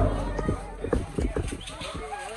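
A loud knock, then several sharp knocks in quick, uneven succession, with people talking.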